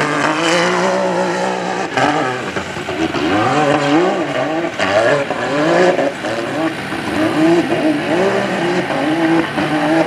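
Rock bouncer buggy's engine revving hard on a dirt hill climb, its pitch rising and falling over and over as the throttle is worked.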